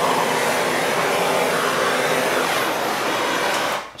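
Handheld torch flame hissing steadily as it is passed over freshly poured epoxy resin to get the bubbles out; it cuts off suddenly near the end.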